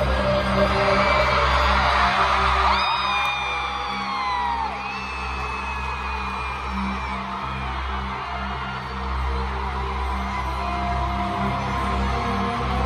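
Live instrumental intro of a pop song played loud through an arena PA: held piano chords over a low bass drone. Fans scream over it in several falling shrieks, loudest about three to five seconds in.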